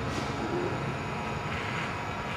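Corded electric hair trimmer running with a steady buzz.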